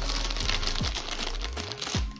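Clear plastic biscuit bag crinkling as it is handled and moved aside, a dense run of crackles.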